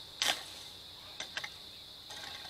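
A garden hoe scuffing once into dry, stony soil, followed by two light ticks about a second later, over a steady high chirring of crickets.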